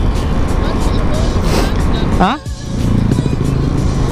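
Background music over steady wind rush on the microphone and the running of a Yamaha Aerox 155 VVA scooter on the move, with a brief rising voice exclamation a little after two seconds in.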